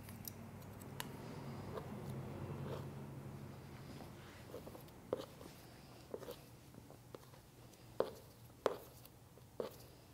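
Hair-cutting shears snipping through wet hair: a handful of short, sharp snips spaced irregularly, the loudest two near the end, with soft handling of the hair between cuts.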